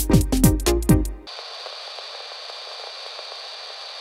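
UK garage-style electronic groove: drums, a bass line and synth chord stabs from Ableton's Meld synth, cutting off about a second in. A steady, thin hiss follows.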